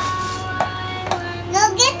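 Electronic beep tones from a toy supermarket cash register: a held beep for about a second, overlapped by a lower tone, with a child's voice coming in near the end.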